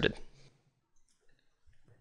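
The last syllable of a spoken word, then near silence with a few very faint clicks about a second in.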